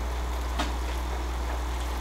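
Classroom room tone: a steady low hum, with one faint click about half a second in.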